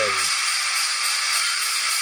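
Movie-trailer soundtrack playing back in a room: a man's voice finishes a line in the first moment, then a steady hiss with a faint low held tone.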